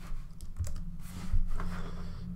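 Computer keyboard tapped a few times at irregular intervals over a low steady hum.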